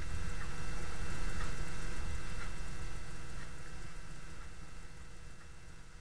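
A low, engine-like rumble that swells about a second in and then slowly fades away, with a few faint light strokes of a marker on a whiteboard over it.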